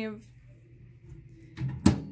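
Microwave oven door being shut: a brief dull knock, then a sharp latch click near the end.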